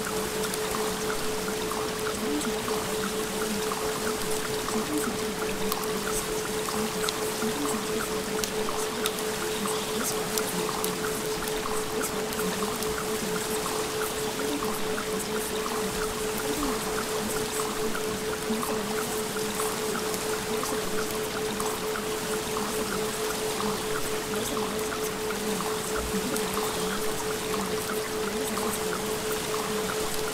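A steady 432 Hz carrier tone held without change over a continuous bed of running, pouring water.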